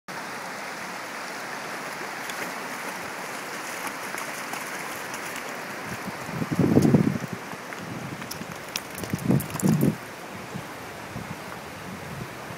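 Steady rush of a shallow creek running over rocks, with a few louder low sounds, one about halfway through and two more a few seconds later.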